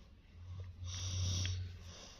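Heavy breathing close to the microphone: one long, rough breath with a low rumble and a hiss that peaks about a second in.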